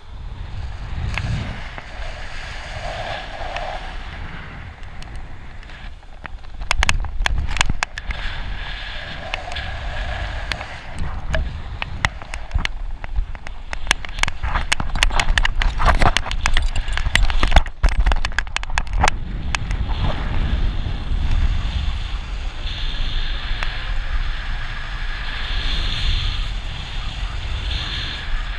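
Wind noise buffeting an action camera's microphone during a bungy jump's free fall and rebounds, a rough rushing that grows louder from about seven seconds in, with rapid crackles and knocks through the middle of the fall.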